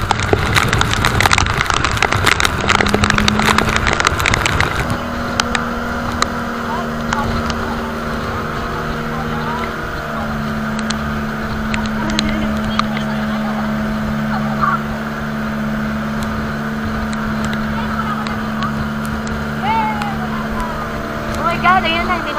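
Heavy rain and wind with many sharp patters for about the first five seconds, then the steady drone of an outrigger boat's engine running at a constant speed, with occasional voices.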